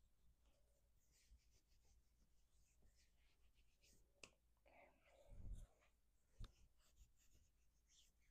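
Faint rustling of bare hands gently patting and sliding over a shirt sleeve and shoulder. There is a soft thump a little past the middle and a sharp tap about a second later.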